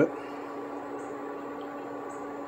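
Steady low hum from a portable electric cooktop heating a pan of cream that is just starting to simmer, with two faint light ticks.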